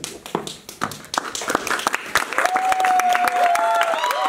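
Audience applause breaking out: scattered claps that quickly build into steady clapping, with whoops and cheering voices joining about halfway through.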